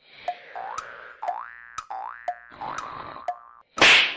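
Cartoon boing sound effect: a springy tone sweeping upward, repeated about every half second with sharp clicks between. It breaks off just before a sudden loud burst near the end.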